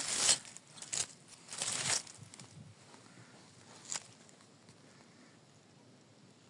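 Dry pine needles and fallen leaves rustling in a few short bursts during the first two seconds and once more about four seconds in, then only faint background.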